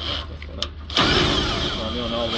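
Cordless drill spinning a NighCo Jack & Drill trailer jack through its drive adapter. It starts about a second in with a steady whine and runs on, driving the jack down toward the bottom of its travel.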